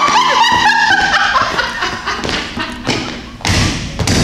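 Background music in the first second or so, then a heavy thud about three and a half seconds in as a person drops onto the hard floor.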